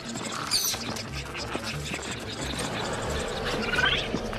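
Film sound effects of a pack of small raptor-like dinosaurs shrieking and chittering, with a sharp high screech about half a second in and rising calls near the end, over a low rumble.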